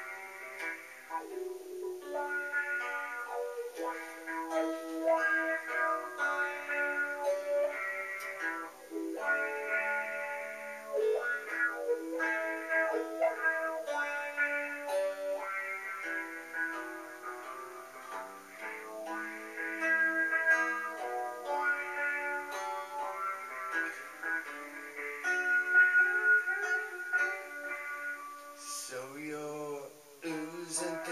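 Solo guitar playing the instrumental intro of a song, picked chords and single notes changing about every second.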